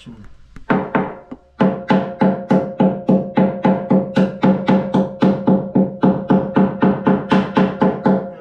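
Hammer blows on the top of a steel diesel tank, about three a second, each blow leaving the steel plate ringing. The blows are chipping old epoxy away from around the tank's gauge opening.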